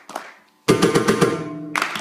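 Mridangam played with bare hands: after a brief pause, a quick phrase of sharp strokes with a ringing, pitched tone begins just over half a second in. Another cluster of crisp strokes follows near the end.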